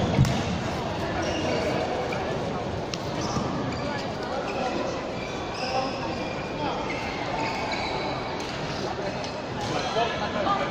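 Badminton play in an echoing sports hall: a sharp racket hit and thudding footfalls at the very start, then scattered shoe squeaks on the court floor and a few more knocks over the chatter of people in the hall.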